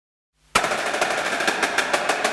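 Rapid percussive drum hits, starting abruptly about half a second in, as the build-up at the start of intro music.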